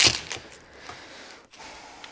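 A short crackling rustle at the start, then low room tone with faint handling noise, typical of shock absorbers being handled in their packaging.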